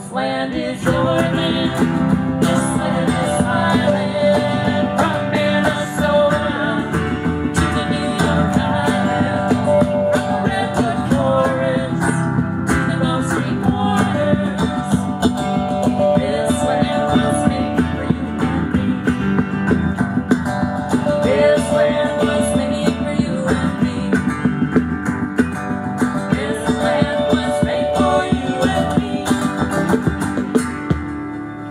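Live electric guitar through a small amp and an acoustic guitar playing a song together without a break, in an instrumental stretch with a melodic line over the strummed chords.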